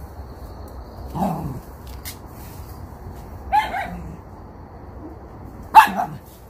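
Dog barking: a bark about a second in, a pair of short, higher barks a little past the middle, and a loudest, sharp bark near the end.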